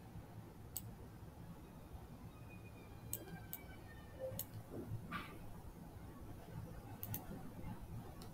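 Faint, sparse computer mouse clicks, about half a dozen spread over several seconds, including a quick double click near the end, over low room hiss.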